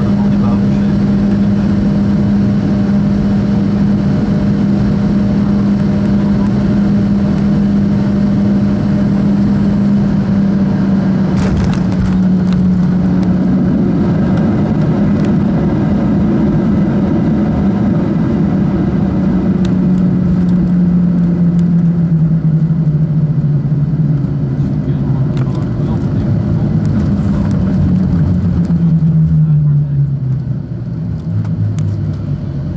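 Jet airliner cabin noise through touchdown: a steady engine drone, a short knock about twelve seconds in as the wheels meet the runway, then heavier runway rumble while the drone slowly falls in pitch as the plane slows.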